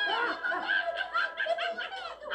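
A high-pitched cartoon character's voice letting out a quick run of short vocal sounds, several a second, played from laptop speakers.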